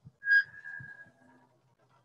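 A single high, steady squeal from a casket lowering device's mechanism as it pays out its straps and lowers the casket. The squeal is loudest at its onset and fades away over about a second.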